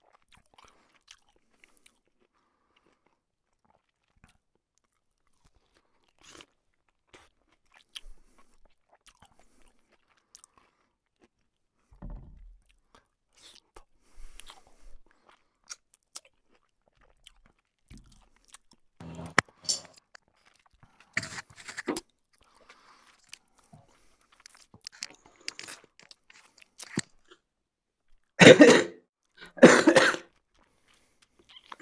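A man chewing and smacking food close to the microphone, eaten with his fingers: sparse at first, then steady bouts of chewing in the second half. He gives a short laugh near the end, the loudest sound.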